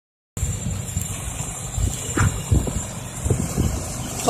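Diesel engine of a loaded six-wheel Isuzu dump truck running as it drives on a dirt track: a low rumble with a few thumps.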